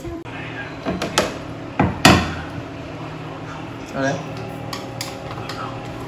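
Kitchen clatter: a few sharp knocks of kitchenware, the loudest about two seconds in. A steady hum then sets in.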